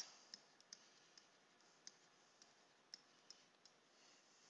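About eight faint, sharp clicks spread irregularly over near silence: a stylus tapping on a tablet screen while handwriting.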